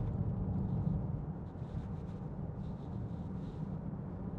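Steady low drone of road and engine noise heard from inside the cabin of a 2015 Range Rover Evoque 2.0 TD4, a four-cylinder diesel, on the move.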